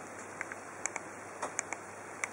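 Faint clicks of a Nokia 1100's keypad buttons being pressed, about six short clicks spread over two seconds, over quiet room tone. No alert tone sounds.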